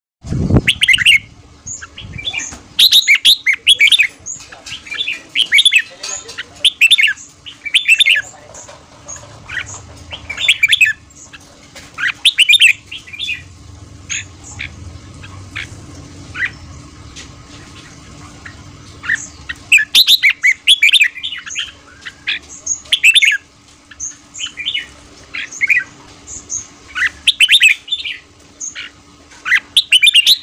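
Red-whiskered bulbul singing: loud, rapid bursts of short whistled notes, grouped in clusters with a quieter spell about halfway through.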